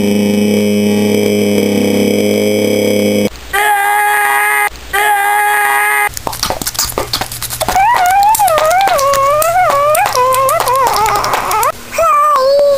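A boy's voice: a long, steady held yell for the first three seconds, then two short held notes. After some crackling, a wobbling, wailing tone rises and falls for the last four seconds.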